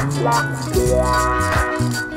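Electric guitar playing over a looped backing with held bass notes and a steady, rapid shaker-like rattle keeping time.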